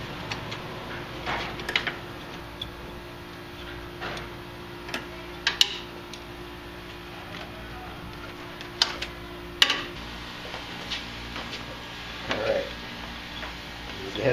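Scattered light clicks and ticks of a hand nut driver working a small bolt and of wiring being handled while a headlight ground wire is disconnected. Two sharper clicks come about five and a half and nine and a half seconds in, over a steady low hum.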